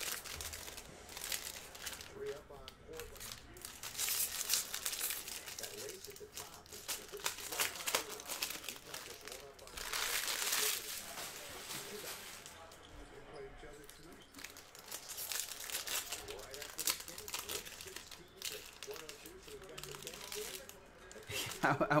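Foil wrappers of baseball card packs crinkling and tearing as the packs are opened and the cards handled, with a louder stretch of crinkling about ten seconds in.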